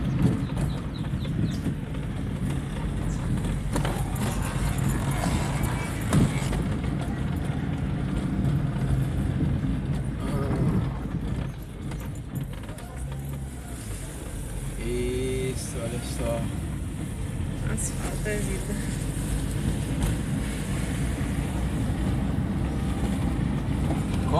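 Car driving along an unpaved road, heard from inside the cabin: a steady low engine and tyre rumble.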